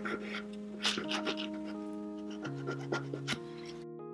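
A nail file scraping over a dip-powder nail to even out a thick spot, in irregular short scratchy strokes that stop near the end. Soft background music with held keyboard notes plays throughout and is the louder sound.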